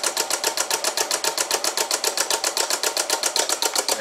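Pulse motor built from microwave-oven parts running fast at 14 volts, its microswitch-switched coil pulsing the spinning magnet rotor. It makes a loud, rapid, even clicking clatter, and the bench is wobbling with it.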